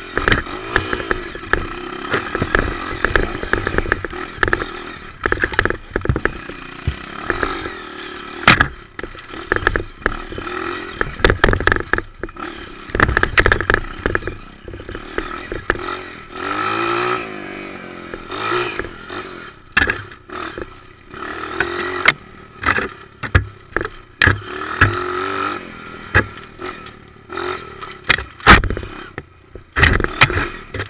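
Off-road motorcycle engine running and revving up and down as the bike picks its way along a rough trail, with frequent sharp knocks, scrapes and rattles as the bike jolts over rocks and ruts.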